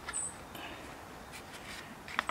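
Quiet handling of a plastic compost digester lid: a few faint light clicks, with a brief high squeak just after the start.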